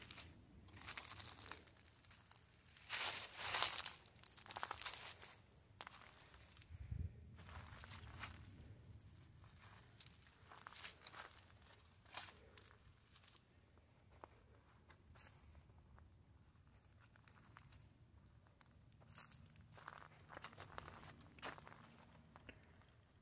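Faint, irregular crunching and rustling of footsteps on dry leaf litter, the loudest cluster a few seconds in and another near the end.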